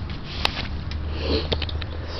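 A sniff and a few light clicks of handling close to the microphone, over a low steady hum.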